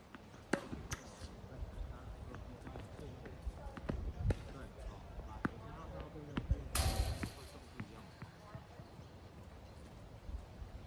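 Tennis balls being struck with racquets and bouncing on a hard court: sharp, separate pops spaced irregularly about a second or two apart. Faint voices in the background, and a brief rush of noise about two-thirds of the way through.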